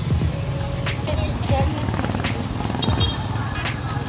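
Street ambience: a motor vehicle engine running steadily under music and scattered voices.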